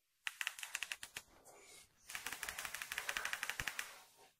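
An isolated drum track playing on its own, with the rest of the song muted: a few sharp hits in the first second, then from about two seconds in a fast, dense run of hits at about ten a second.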